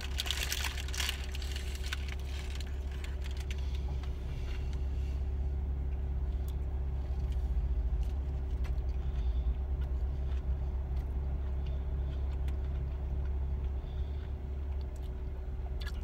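Paper wrapper crinkling and rustling for the first couple of seconds as a wrapped burrito is bitten into. This lies over a steady low hum of an idling vehicle heard inside the car's cabin, which continues alone afterwards.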